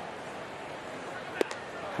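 Ballpark crowd murmur, with one sharp pop about one and a half seconds in: a 98 mph four-seam fastball smacking into the catcher's mitt for a called strike three.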